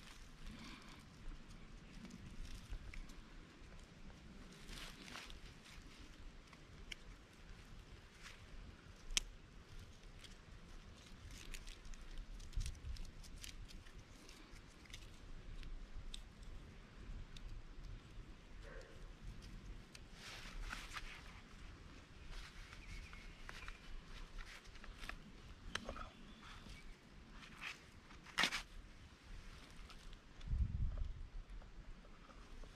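Faint handling sounds of hands working a thin cord and small gear: scattered small clicks and rustles, with a sharper click about nine seconds in and again near the end, over a low rumble.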